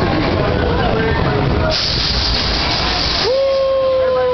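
Roller coaster train rolling into the station with a low rumble, then a loud hiss of its air brakes for about a second and a half. Near the end a long, steady held tone begins.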